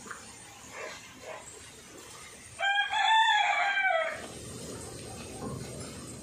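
A single loud, high-pitched animal call about a second and a half long, starting a little past halfway through. Its pitch wavers, then drops at the end.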